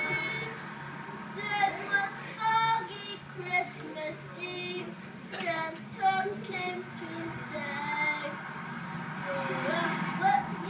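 Children singing, heard played back through a television's speaker.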